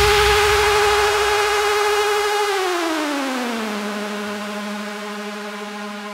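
Electronic dance music breakdown: a sustained synthesizer tone that bends down about an octave midway and then holds, the whole sound fading steadily.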